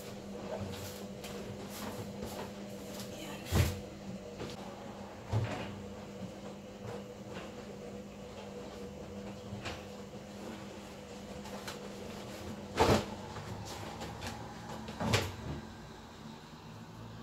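Laundry being unloaded from a front-loading washing machine, with four sharp knocks and bumps among softer rustling, over a faint steady hum.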